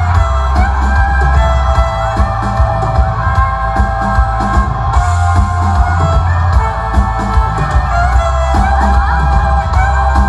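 Live band playing an Irish-style tune: a fiddle carries a sliding melody over electric guitar, bass and drums.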